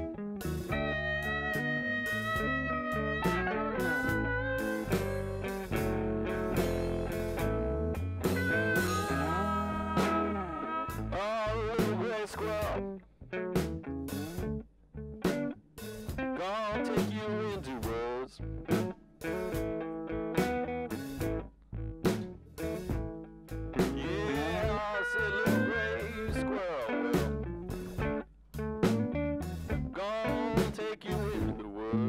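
Band music: an instrumental passage of guitar lead lines, with held and bent notes, over a drum kit.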